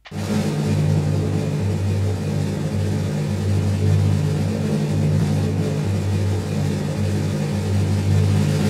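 Low rumbling suspense sound effect that starts suddenly and holds steady. It is a drum-roll-style build-up that signals the winner is about to be revealed.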